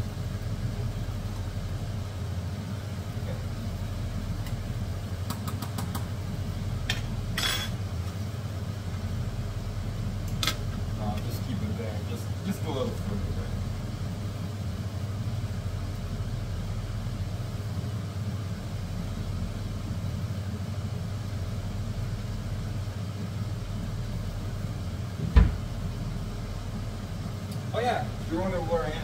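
Kitchen range hood extractor fan running with a steady hum over pots boiling on the stove. A few light clinks in the first half and one sharp knock near the end.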